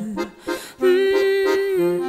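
Accordion playing a held chord in a French chanson accompaniment. It comes in just under a second in, after the singer's last sung note fades, and shifts notes near the end.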